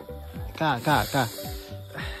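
A man's voice talking over steady background music, with a high hiss in the middle.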